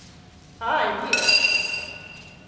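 A sharp clink about a second in that rings on with clear, steady high tones, like a small struck bell or glass. It comes just after a short, sliding pitched sound about half a second in.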